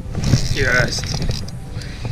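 A short wordless voice sound, warbling in pitch, about half a second in, over a steady low rumble of wind and handling noise on the camera microphone.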